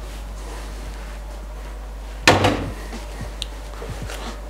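A stainless steel pot set down with a single loud knock about two seconds in, then faint handling sounds of hands working dough on a floured wooden board, over a steady low hum.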